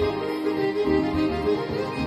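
Instrumental break of a pop backing track: a held melody line over a pulsing bass, with no singing.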